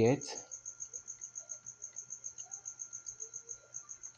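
High-pitched chirping in a steady, even pulse of about six or seven chirps a second, like a cricket, over a faint steady hum.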